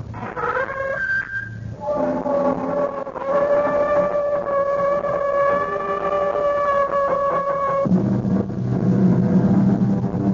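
Creaking-door sound effect: one long creak that rises in pitch at first, then holds a wavering pitch for several seconds. Near the end, lower sustained tones take over.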